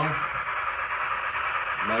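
Steam running sound from the Paragon3 sound decoder in an N scale Broadway Limited Light Pacific 4-6-2 locomotive, played through the model's small onboard speaker: a steady hiss.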